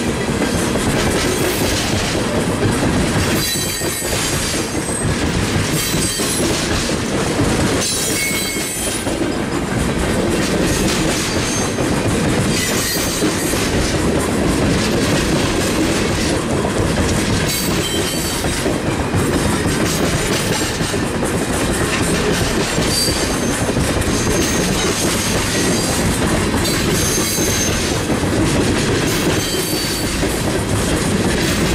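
Freight train tank cars rolling past at close range, their steel wheels clattering steadily over the rail joints, with brief faint high-pitched wheel squeals now and then.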